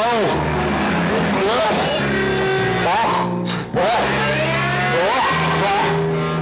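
Loud free-improvised noise music: an amplified kazoo swooping up and down in pitch over a steady, distorted low drone from amplified homemade string instruments. The sound drops out briefly about three and a half seconds in, then resumes.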